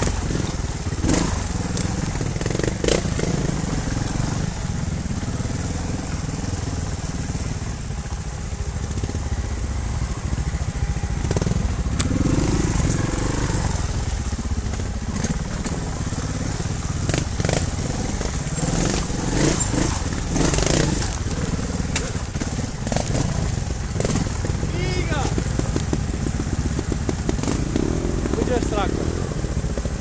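Trials motorcycle engine running at low revs over loose rocks, with scattered sharp knocks and clatters from stones and the bike.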